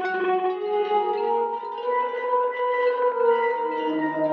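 A preset from the Tapes.01 cassette-tape sample library for Kontakt playing sustained, overlapping pitched tones whose notes shift every second or so.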